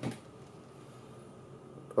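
Quiet room tone with a faint steady hum, right after a man's word trails off at the very start.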